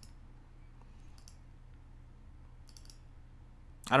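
Two faint computer mouse clicks, one about a second in and one near the three-second mark, over a low steady hum.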